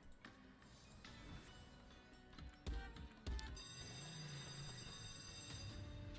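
Online slot game sound effects: quiet at first, then two thumps about half a second apart midway, followed by a sustained bright musical jingle as the free-spins bonus is awarded.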